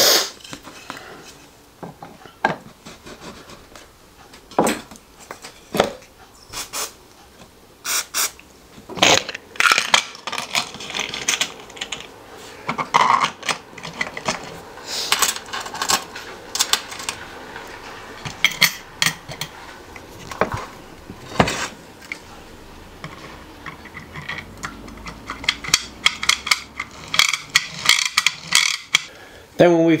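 Irregular clicks, clinks and knocks of 3D-printed plastic parts and metal pieces being handled, fitted together and set down on a workbench while a hand generator is assembled.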